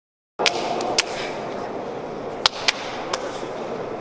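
Steady hum of a large indoor athletics hall, broken by a handful of short sharp clicks and knocks, likely from sprinters settling into their starting blocks.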